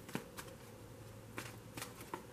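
A few soft clicks and flicks of a tarot card deck being handled in the hand, about four small sharp sounds spread across two seconds.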